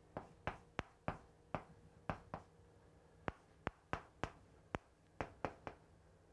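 Chalk on a blackboard while writing: an irregular run of sharp taps, about fifteen in six seconds, some trailing into a short scrape.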